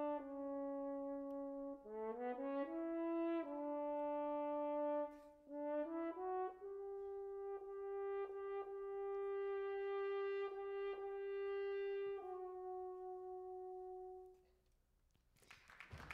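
Solo French horn playing a slow, pretty melody of held notes, the lyrical solo style of writing for the horn. It ends on one long held note of about eight seconds that fades away.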